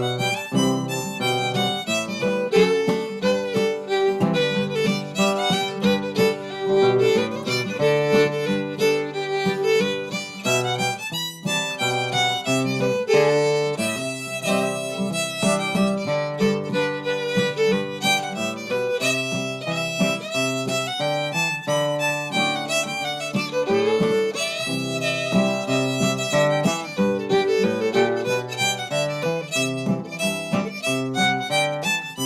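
An old-time fiddle tune played on a bowed fiddle with acoustic guitar strumming chord accompaniment underneath, heard over a video-call link.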